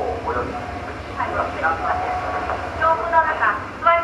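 Voices singing, with held notes, over a steady low hum.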